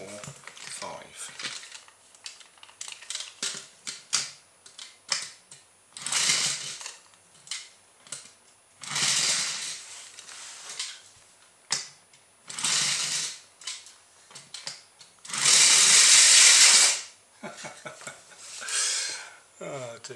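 Toy compressed-air car: rapid hand-pump strokes charge its air tank, then its air engine runs in several separate bursts of about a second each, the longest and loudest about fifteen seconds in. It starts and stops unevenly, which the owner calls a bit fussy.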